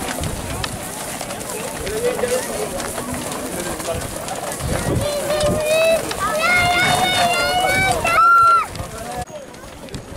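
Hooves of a group of Camargue horses moving together over dry, dusty ground, a steady rumble of hoofbeats. Voices shout and call over it, the loudest a long shout near the end.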